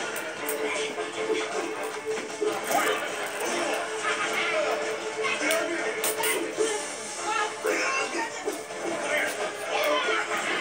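Television programme playing: background music with voices of dialogue.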